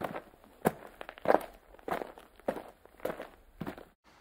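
A hiker's footsteps, walking at a steady pace of about three steps every two seconds.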